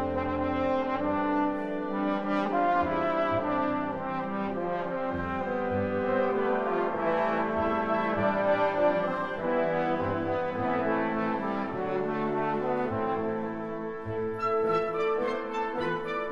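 Trombone with a wind orchestra, the brass holding full, sustained chords and melody. A run of short, evenly spaced percussive taps joins near the end.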